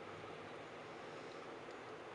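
Faint, steady hiss of room tone, with no distinct sound events.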